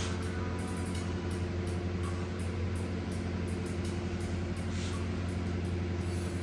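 A steady, unbroken low hum from a running motor or engine.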